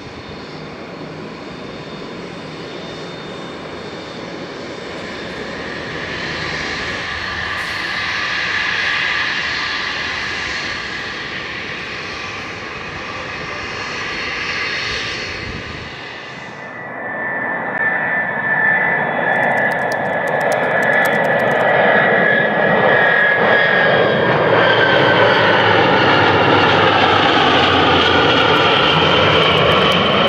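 Twin turbofan engines of a Cessna UC-35D Citation Encore whining steadily at low thrust as the jet taxis. About halfway through, the sound cuts suddenly to louder aircraft engine noise with a slowly falling whine.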